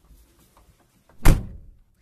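A car door slammed shut once, about a second in, heard from inside the car's cabin: a single heavy thunk.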